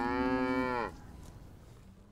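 A cow mooing: one long moo that drops in pitch as it ends, about a second in.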